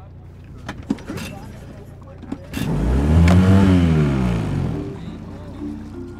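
An engine-powered craft passing close by: its low drone swells a little over two seconds in, peaks near the middle with a sweep up and down in tone, and fades away over the next two seconds.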